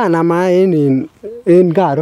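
A man speaking, drawing out a long vowel in the first second, then a short pause and more speech.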